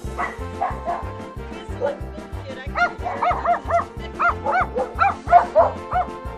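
High yips and barks of small toy poodles over background music with a steady beat; a few scattered yips early, then a quick run of about a dozen in the second half.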